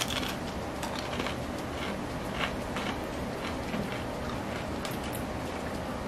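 A crunchy snack chip being chewed with the mouth closed: a scattering of soft, irregular crunches over a steady background hiss.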